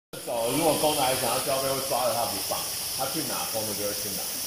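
People talking, the words not made out, over a steady high hiss.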